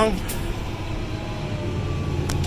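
Fendt 1050 tractor's six-cylinder diesel engine running steadily, heard inside the cab, with a faint whine rising slightly partway through. The diff locks are engaged, ready for a recovery pull.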